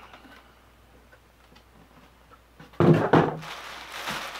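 Cardboard shipping box being handled, faint at first, then a sudden thump with a short rattle of knocks near the end as the box is moved.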